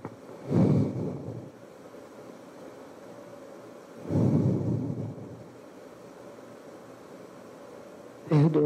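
Two muffled breaths into a handheld microphone held close to the mouth: one about half a second in, a longer one about four seconds in, over quiet room tone.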